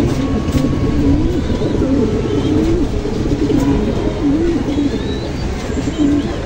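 Racing pigeons cooing repeatedly in their loft, a run of low rising-and-falling coos one after another, over a steady low background rumble.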